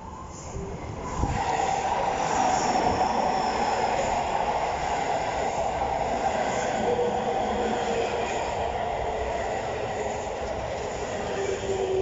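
A JR West 223 series electric train pulling into the platform close by, slowing as it arrives: a steady rumble of wheels on rail sets in about a second in, with a faint whine that falls slowly in pitch as the train slows.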